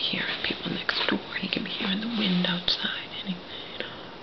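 A woman whispering under her breath, with a short hummed, voiced murmur about two seconds in.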